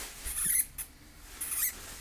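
Two small pet hamsters fighting, with two short high-pitched bursts of sound about a second apart.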